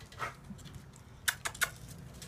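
A few light clicks and taps from a small blind dog in a halo harness moving about on a wooden deck. The loudest three come close together about a second and a half in.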